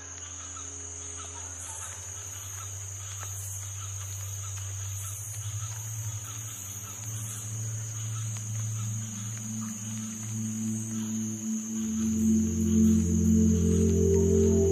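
Background music swelling in: a low drone that grows louder through the clip, with sustained organ-like tones entering near the end. A steady high-pitched insect drone, like a cricket chorus, runs beneath it.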